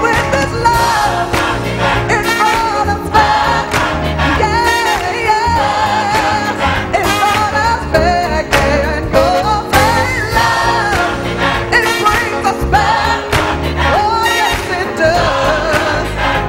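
Live gospel song: a woman sings lead into a handheld microphone over a choir and band, with a steady beat.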